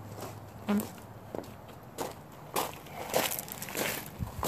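A person's footsteps crunching on gravel at a steady walking pace.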